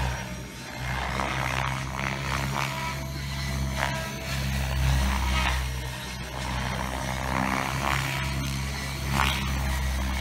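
Radio-controlled 3D aerobatic helicopter flying set manoeuvres at a distance: its rotor and motor sound swells and fades every second or two as the blade pitch changes through the manoeuvres, over a steady low hum.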